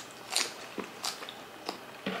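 Close-miked mouth sounds of eating by hand: chewing with sharp wet lip smacks, three of them about two-thirds of a second apart.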